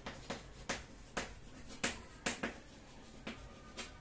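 Chalk writing on a chalkboard: about a dozen short, sharp taps and clicks at an irregular pace as each stroke meets the board.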